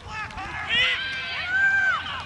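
Spectators yelling in high, shrill voices to cheer on a football play, with one long drawn-out shout near the end.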